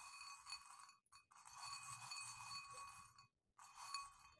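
Small metal charms clinking faintly against each other and against a glass bowl as a hand rummages through them.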